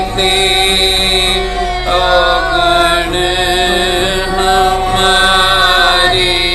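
Gurbani kirtan in Raag Gauri Cheti: women's voices sing long held notes that glide from one pitch to the next, over bowed Sikh string instruments, a taus among them.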